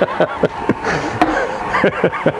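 A man laughing, a run of short chuckles one after another.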